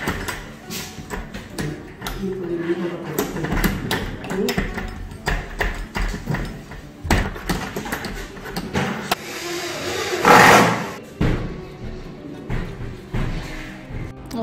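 Steel barrel bolt on a newly fitted wooden door slid back and forth by hand, clacking repeatedly as it is checked for engaging properly in its keeper. Background music runs underneath, with a brief louder rushing noise about ten seconds in.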